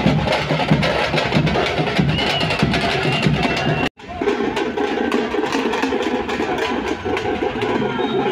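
A street drum group playing frame drums in a fast, dense, loud beat. The sound drops out suddenly for a moment about four seconds in, then the drumming carries on.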